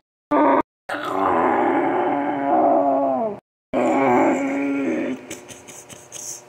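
A person's voice making long, drawn-out groaning monster sounds, two sustained groans whose pitch sinks at the end, voicing the toy creatures. The sound breaks off abruptly several times at edit cuts.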